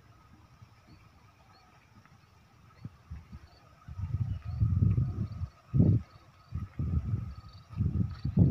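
Wind buffeting the phone's microphone in irregular low rumbling gusts, starting about four seconds in, after a quiet stretch with a faint steady high tone.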